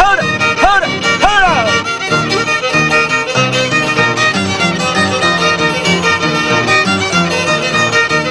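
Andean huachua music played on violin and harp, with the violin carrying a lively bowed melody. A few sliding rising-and-falling calls sound over it in the first second or so.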